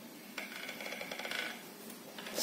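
Metal beaters of an electric hand mixer rattling and clinking in their sockets for about a second as the mixer is handled.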